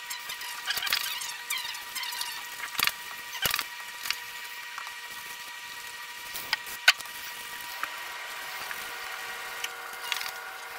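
Ironing by hand: a steam iron sliding over cotton fabric on a padded ironing board, the cloth rustling as it is smoothed, with several sharp knocks and clicks as the iron is set down and moved, the sharpest about seven seconds in. A faint steady high hum runs underneath.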